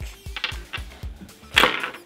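Background electronic music with a steady, even beat, with light clicks and a short hissy burst near the end, likely from handling the plastic remote and its wire.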